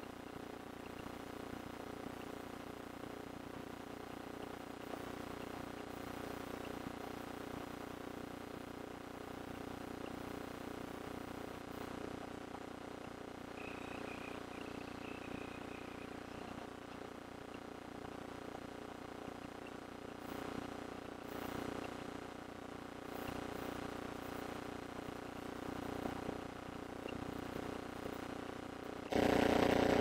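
Steady drone of a single-engine RV light aircraft's piston engine and propeller in flight, heard faintly through the cockpit headset audio as a low, even hum. About a second before the end the sound steps up sharply as the radio is keyed for a call.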